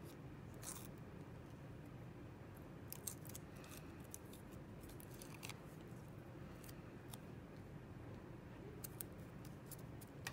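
Faint, scattered crackles and rustles of paper backing being peeled off foam leaf stickers and the foam stickers being pressed onto paper, over a low steady room hum.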